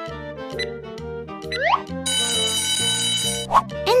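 Cartoon quiz sound effects over children's background music: ticking as a countdown runs out, a short rising sweep, then an alarm-clock bell ringing for about a second and a half, signalling that the answer time is up.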